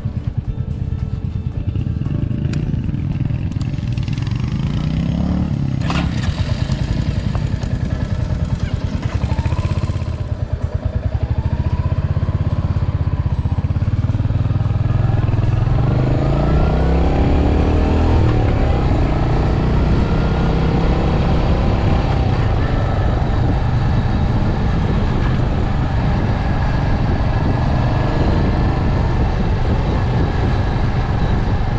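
Royal Enfield Hunter 350's 350 cc single-cylinder engine heard from the handlebars: running at a standstill, then pulling away about ten seconds in with the revs rising through the gears, and running steadily at road speed for the rest.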